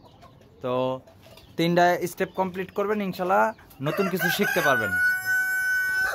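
A rooster crowing in the second half, its call bending in pitch and then ending in a long, steady held note.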